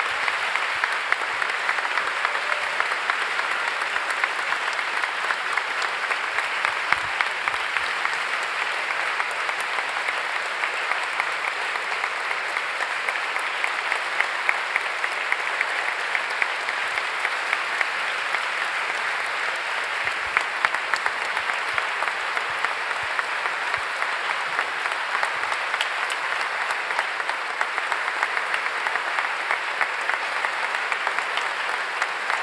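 A large audience applauding: dense, continuous clapping from hundreds of hands that holds steady without a break.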